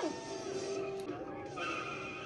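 Faint car sounds from a cartoon's soundtrack, a vehicle driving, with light music under it.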